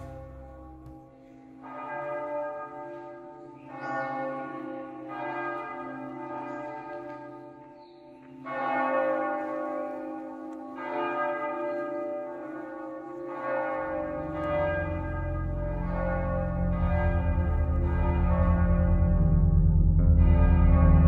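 Bells struck one after another, about every one to two seconds, each stroke ringing on and fading. About two-thirds of the way in, a low steady drone comes in underneath and swells.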